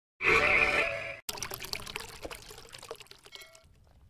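Channel intro sound effect: a bright ringing tone lasting about a second, then a crackling hiss that fades away over the next two seconds.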